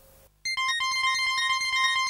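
Electronic closing theme music of a TV news programme starts about half a second in, after a brief near-silence: a fast pulsing synthesizer pattern over held high tones.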